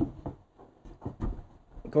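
Wine barrel staves being handled and fitted together on biscuits, a few light wooden knocks and rubs.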